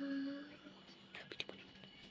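A person's voice holds one short steady-pitched sound, like a hum or drawn-out vowel, for about half a second. About a second later come a few quick clicks, then only quiet room noise.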